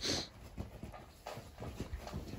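Dalmatians breathing and panting close to the microphone, with a short breathy puff at the start and softer breaths and small movement sounds after it.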